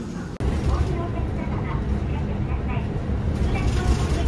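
Steady low rumble of a city bus's engine and road noise heard from inside the cabin as it drives. A voice runs over it. It starts after a brief drop about half a second in.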